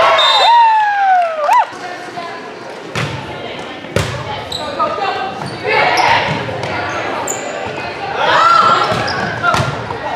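Volleyball being played in a gym: the ball is struck with sharp smacks about three and four seconds in. Players and spectators shout, with a long falling yell at the start, all echoing in the hall.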